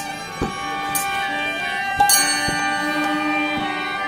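Bengali kirtan music: a harmonium holds steady chords while hand cymbals clash about once a second and a drum is struck between the clashes.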